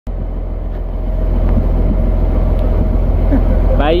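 A wooden fishing boat's engine running steadily with a low, even drone.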